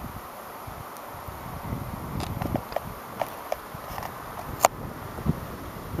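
Outdoor ambience: the steady soft rush of the river below, with scattered light footsteps and clicks as someone walks across the yard, and one sharper click about two-thirds of the way through.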